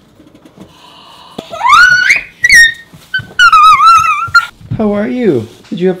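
A toddler's high-pitched vocal squeals: several rising, wavering calls over about three seconds. They are followed by a short, lower adult voice that falls in pitch.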